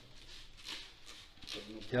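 Aerosol can of chemical engine degreaser spraying in two short, faint hisses onto a car's AC condenser. A man starts speaking near the end.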